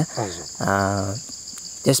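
Steady high-pitched insect chorus running under a man's speech, which briefly holds a drawn-out sound about half a second in.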